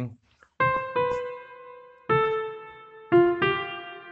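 A piano-like software instrument in FL Studio played live one note at a time. There are about five notes, the first about half a second in, each struck and left to ring and fade.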